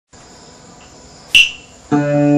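A faint, steady, high-pitched whine, broken about a second and a half in by one loud, sharp click that rings briefly. Right at the end a plucked string instrument sounds its first notes of a traditional Vietnamese cổ nhạc solo.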